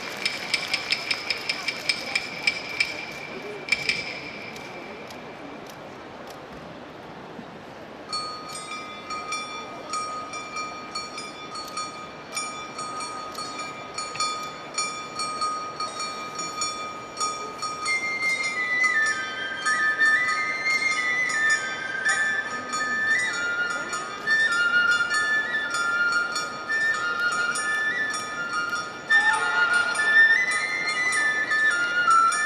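Japanese festival hayashi music. A steady high whistle-like tone with quick clicks runs for the first few seconds, then there is a quieter stretch. About eight seconds in, a bamboo flute holds a long note and, from the middle on, plays a stepping melody over light percussion hits.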